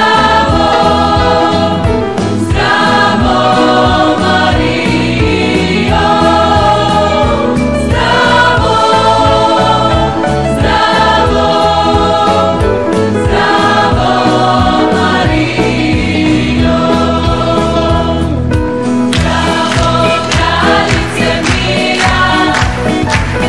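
Music: a choir singing with instrumental accompaniment, in phrases a few seconds long.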